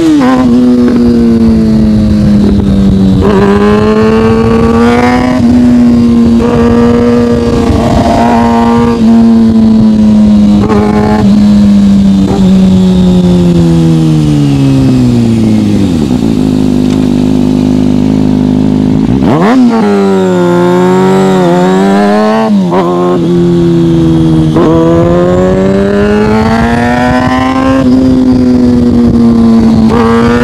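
2013 Kawasaki Ninja ZX-6R 636's inline-four engine through an M4 aftermarket exhaust, under way at a steady clip, its note rising and falling with the throttle. Past the halfway point it drops to a lower, steadier tone for a few seconds, then revs sharply up, with road and wind rumble underneath.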